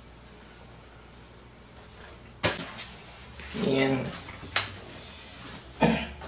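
Sharp clicks and knocks from handling a pistol crossbow and a cardboard archery target box: one snap about two and a half seconds in, another about four and a half seconds in, and a loud knock near the end. Between the first two there is a short low hum.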